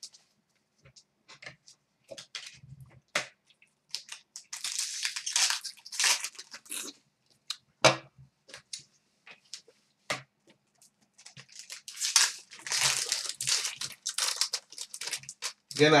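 Upper Deck hockey card pack wrappers being torn open and crinkled, with cards handled and shuffled between. There are two longer stretches of tearing and crinkling, about four seconds in and again from about twelve seconds, with scattered light clicks of cards in between.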